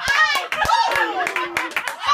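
Excited women shouting and yelling without clear words, with a run of sharp hand claps scattered through.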